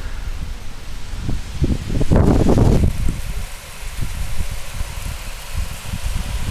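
Wind buffeting the camera's microphone outdoors, an uneven low rumble, with a louder rush about two seconds in.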